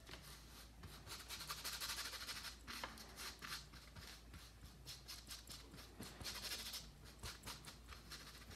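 Large paintbrush scrubbing thick gray paint across a canvas in broad back-and-forth strokes: a faint, scratchy swishing that comes and goes, fullest about two seconds in and again around six seconds.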